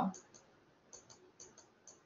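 Faint, sharp clicks of a stylus tapping on a tablet screen while handwriting, about seven ticks at irregular intervals.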